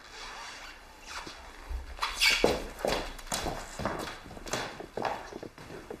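Footsteps of people walking out of a room, a quick irregular run of short steps, a few a second, that starts about a second in and grows louder.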